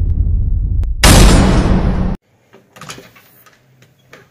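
Cinematic boom sound effect from a video intro title card: a deep booming hit dying away, then a second hit about a second in that cuts off abruptly. Faint handling knocks follow.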